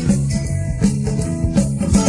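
Christian rock karaoke backing track with guitar, bass and drums keeping a steady beat, and no lead vocal.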